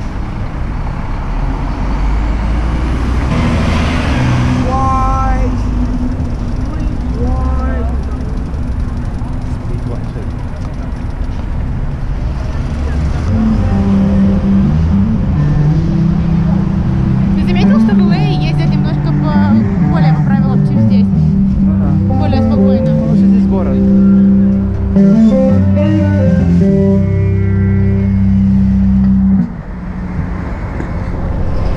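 City street traffic, then from about halfway in a man singing in long held notes over the traffic, a street performer. The singing stops abruptly near the end.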